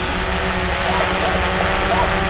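Xdynamics Evolve quadcopter's propellers humming steadily in flight, an even whirr with a faint constant tone that does not change in pitch.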